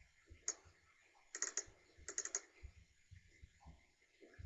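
Faint computer mouse clicks: a single click about half a second in, then two quick runs of several clicks near the middle, as cards are clicked into a deck on screen.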